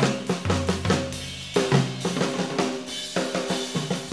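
Jazz drum kit played busily: quick snare and rim hits, bass drum and cymbals, with pitched instrument notes sounding underneath.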